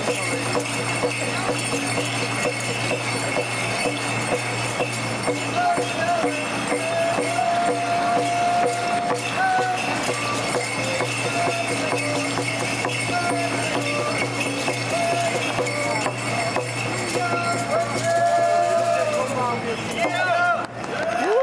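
Iroquois Fish Dance song: singing over a fast, steady percussion beat, with the jingling of bells on the dancers' regalia.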